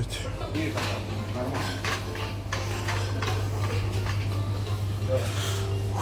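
Supermarket ambience at the refrigerated display cases: a steady low hum, with faint voices, background music, and light clicks and rustles.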